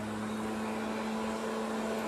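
A steady low hum at one unchanging pitch, over a faint hiss.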